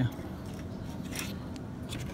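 Faint rubbing and a couple of light scratchy clicks of a hand handling car wiring and plastic trim near the horn relay, over a steady background hiss.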